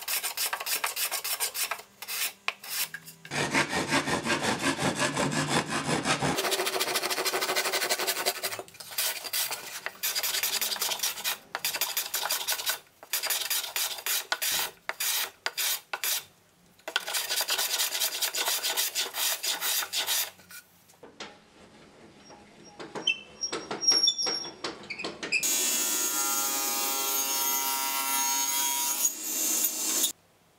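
A hand tool worked over the edges of a spruce box makes rapid, rasping back-and-forth strokes, in runs of a few seconds with short pauses between them. Near the end a table saw runs steadily for a few seconds with a pitched hum.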